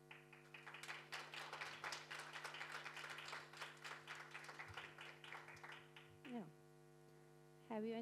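Scattered applause from a small audience that lasts about six seconds and dies away, over a steady electrical hum.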